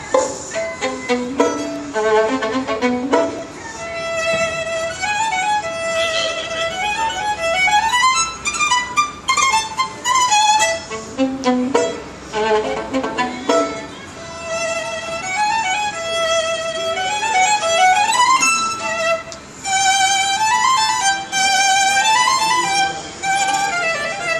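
Solo violin played with the bow: a lively melody of quick running notes climbing and falling, opening with a few low, heavier strokes.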